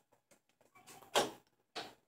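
A wooden bedroom door being pushed shut, with a short noise about a second in and another brief one near the end.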